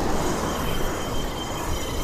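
Steady rushing noise of wind buffeting the microphone and waves breaking on the shore, with a fluctuating low rumble.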